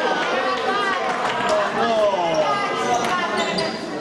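Basketball game sounds in a gym: a ball bouncing on the hardwood floor while several players and people on the benches call out over one another.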